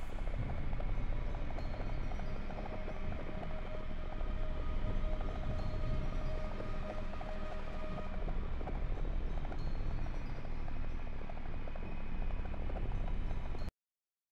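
Dark ambient background bed: a steady low rumble with fine crackle and a few faint held tones, cutting off suddenly near the end.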